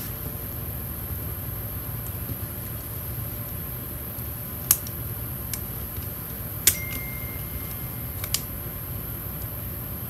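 Hands peeling and pressing a planner sticker onto a spiral-bound planner page: light handling noise with three sharp clicks in the second half, over a steady low hum.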